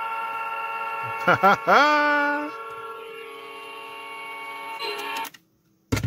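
Hockey goal light's electronic horn sounding a steady honk of several tones, set off through the Operation game's circuit. It drops in volume about three seconds in and cuts off abruptly a little after five seconds. A short click follows near the end.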